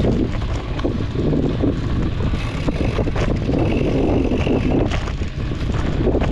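Wind buffeting an action camera's microphone while riding a mountain bike on dirt singletrack, with a steady rumble of tyres over the trail and scattered clicks and rattles from the bike.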